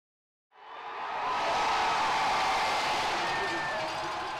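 Large football stadium crowd cheering, fading in from silence about half a second in and then holding steady.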